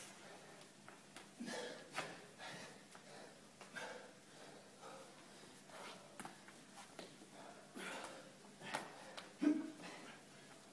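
Heavy breathing and sharp exhales of men straining through kettlebell Turkish get-ups, a breath every second or so, the loudest near the end.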